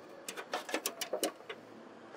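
A quick, irregular run of light clicks and taps, about ten in a second and a half, as a metal mid-strap is pressed and seated into place on an aircraft wing spar.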